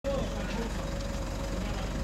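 Steady low rumble of outdoor background noise, with faint voices of people talking in the background.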